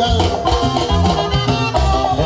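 Live dance band playing a son for dancing, with a steady bass beat under a melody line.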